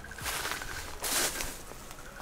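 A person sniffing twice through the nose, the second sniff about a second in, from the dusty air.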